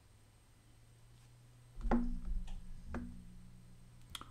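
Two sharp knocks about a second apart, the first the louder, each followed by a brief low ring over a low hum.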